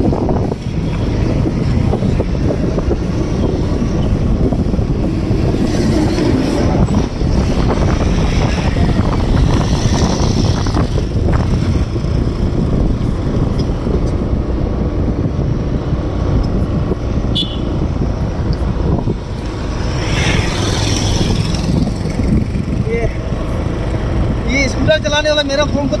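Steady wind noise buffeting the microphone while moving along a road, with road and vehicle noise underneath; a voice starts talking near the end.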